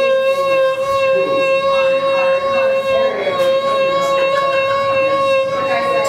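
Violin sounding one long bowed note held at a steady pitch throughout, as part of a close-up vibrato demonstration.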